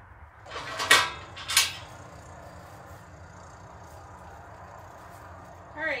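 Two sharp clattering knocks about half a second apart near the start; the first swells up just before it. Steady low background noise follows.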